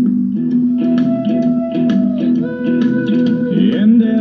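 Guitar music from an iPod played through the speaker of a 1948 Westinghouse H104 tube table radio, fed into its phono input, with held notes over plucked strings.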